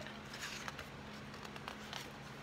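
Faint rustling and light ticks of cardstock paper being handled as a sheet is pulled from a patterned paper pad.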